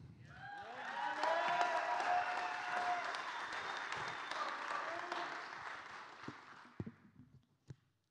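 Audience applauding, with a voice or two calling out. The applause builds over the first second and dies away about six or seven seconds in, and a few faint knocks follow near the end.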